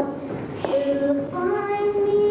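A girl singing, holding long notes that change pitch, with a brief break about half a second in.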